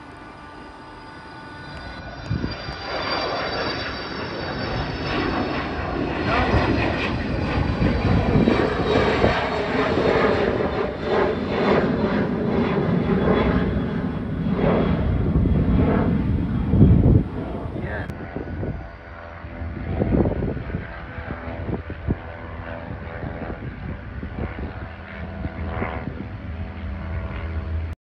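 An airplane passing overhead. Its engine noise builds over the first few seconds, is loudest for about ten seconds in the middle with a slowly falling whine, then fades off.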